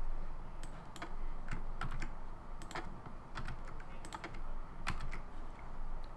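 Typing on a computer keyboard: a string of irregular keystrokes with short gaps between them.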